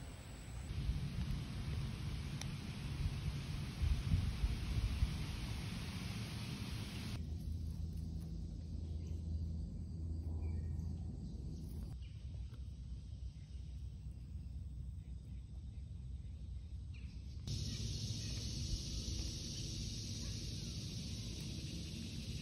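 Low rumble and faint hiss of outdoor background noise on a phone microphone, with abrupt changes in character where separate short clips are joined, three times.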